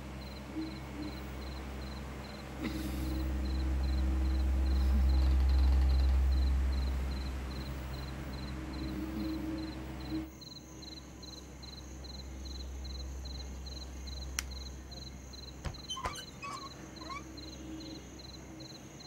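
Night-time crickets chirping in a steady, rhythmic pulse over a low hum that swells and fades in the middle. A few light clicks and knocks come near the end.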